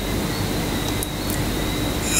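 Steady background hiss with a low hum and a faint high whine, the noise floor of a home recording. Two faint clicks come about a second in.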